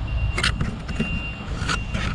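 Wind rumbling on the microphone, with two faint clicks of handling, one about half a second in and one near the end.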